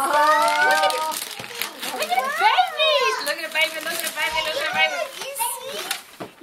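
Excited, high-pitched voices of adults and children exclaiming over an opened present, starting with a long drawn-out exclamation, with some wrapping paper rustling.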